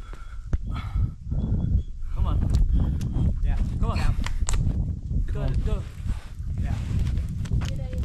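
A bouldering climber panting and grunting with effort as he presses himself up a granite boulder, over a steady low rumble of wind on the microphone.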